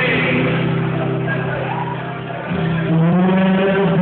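Rock band playing live through amplification: electric guitar and bass hold a sustained chord that steps up to a higher note about two and a half seconds in.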